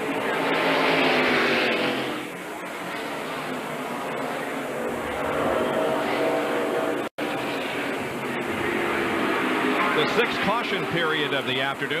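NASCAR Winston Cup stock cars' V8 engines running on the track at caution pace, louder as cars pass during the first two seconds. There is a brief dropout in the sound about seven seconds in.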